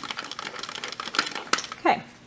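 Crank of a daylight film bulk loader being turned to wind film into a canister, giving a rapid run of small clicks. A short falling sound near the end.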